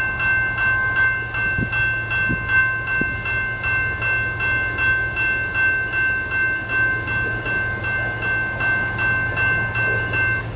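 Railroad crossing warning bell ringing steadily at about two strokes a second while the crossing gates come down, signalling an approaching train. A steady low hum runs underneath.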